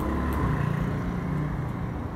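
Low engine rumble of a passing motor vehicle, swelling about half a second in and easing off near the end.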